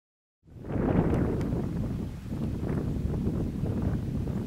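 Wind rumbling on the microphone outdoors: a steady low, noisy rush that fades in about half a second in after a moment of silence.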